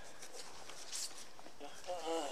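Quiet rustling of clothing and bedding close to the microphone as hands move over the man, with a soft swish about a second in and a faint voice near the end.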